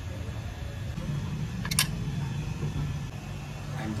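Steady low background rumble with two sharp metallic clicks close together a little before the middle, a steel spanner knocking against metal.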